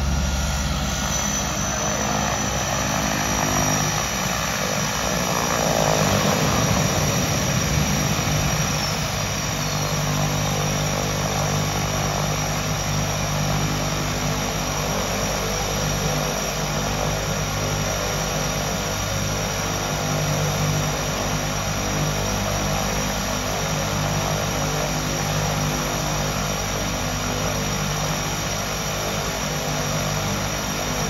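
De Havilland Canada DHC-6 Twin Otter's two PT6A turboprop engines running at taxi power: a steady propeller drone under a thin, high turbine whine. The pitch sweeps briefly about six seconds in.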